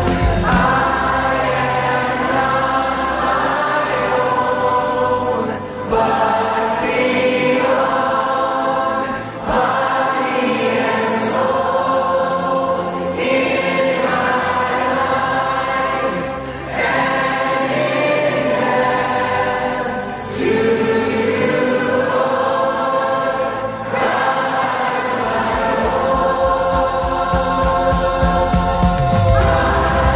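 Many voices singing a Christian worship song together, like a choir, over musical backing. The singing comes in phrases a few seconds long, with a short dip between phrases.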